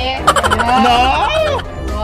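Two women laughing, high-pitched and warbling with the pitch wobbling up and down, loudest through the first second and a half.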